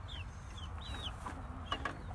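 Chickens in the coop calling, several short, high chirps scattered over two seconds above a low background rumble, with a couple of faint clicks.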